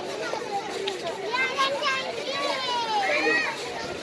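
Children shouting and chattering at play, many high voices overlapping.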